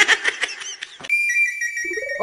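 A high, steady whistle tone, a comedy sound effect, starting about a second in and stepping slightly down in pitch as it holds.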